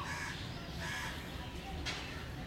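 A bird calling in the background, two short calls in the first second, with a single sharp click near the end.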